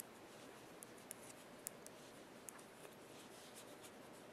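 Near silence with faint, irregular clicks of metal knitting needles touching as stitches are worked, about six or seven over a few seconds, over quiet room tone.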